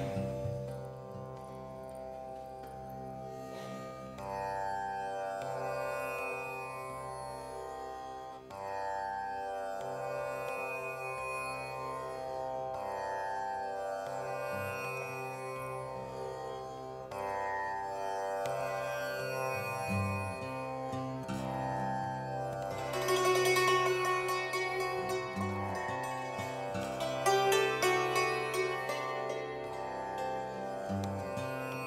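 Santoor struck with a pair of light hammers, playing a slow Indian-style melody over a steady low drone. In the last third the hammering grows louder and denser, with quick repeated strokes.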